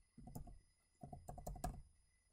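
Faint computer-keyboard typing: two short runs of quick keystrokes with a brief pause between them.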